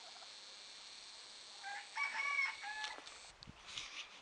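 A rooster crowing once, about two seconds in: a single call with a rising start, a held middle and a falling end, over a faint steady hiss.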